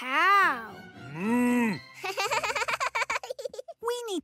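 A short high rising-and-falling cartoon call, then a cartoon cow mooing once, low and held for under a second. A long quavering call like a sheep's bleat follows, with soft background music underneath.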